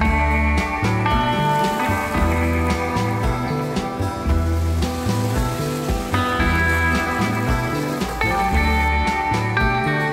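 Background music with bass notes and a steady percussive beat.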